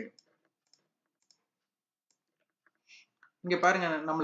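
A few faint, short computer-mouse clicks in a near-silent pause, then a man's voice starts talking again about half a second before the end.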